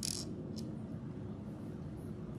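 Plastic pony beads being handled and threaded onto cord: a short rustle at the start and a faint click about half a second in, over a steady low room hum.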